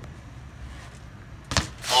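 A BMX bike landing hard on pavement, one sharp impact about a second and a half in, then a loud scuffing rush just before voices start.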